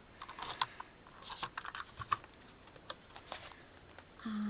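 Double-sided tape runner being rolled across a paper journal page, a quiet run of irregular small clicks and crackles.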